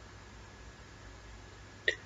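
Faint steady hiss of the recording, with one brief mouth sound, like a short catch of breath, just before the end.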